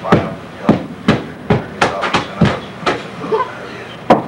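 Repeated blows of a hand tool breaking up a floor, about two strikes a second, eight or so in all, stopping about three seconds in.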